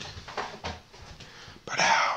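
Faint soft taps and rustles from hands pressing a small brownie-and-Spam sandwich together. A man's voice starts near the end.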